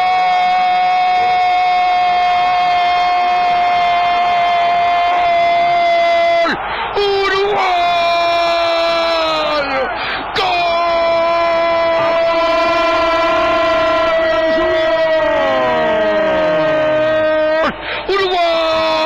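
A radio football commentator's long, drawn-out "goooool" shout celebrating a goal, held on one steady pitch for several seconds at a time and broken twice by short gasps for breath.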